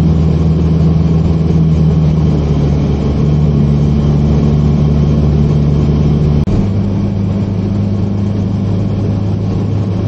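Classic car's engine running steadily at motorway cruising speed, heard from inside the cabin with road noise under it. About six and a half seconds in, the sound breaks off suddenly and resumes with a different engine note.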